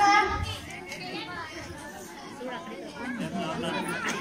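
Speech: a boy's voice through a microphone and PA, loudest in the first half second, with chatter behind it.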